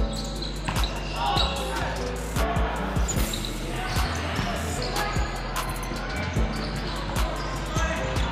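Volleyball rally in a gym: repeated sharp hits of the ball on hands and arms, with players' calls, over background music.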